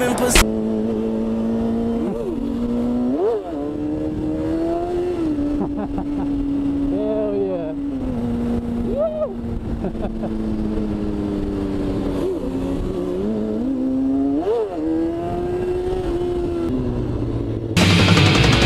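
Kawasaki Ninja ZX-6R 636 inline-four engine running steadily under way, its pitch stepping down a few times and rising and falling briefly several times as the throttle is blipped.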